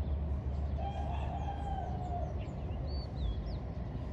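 A rooster crowing once, a single wavering call lasting about a second and a half, over a low steady rumble. Short high bird chirps follow near the end.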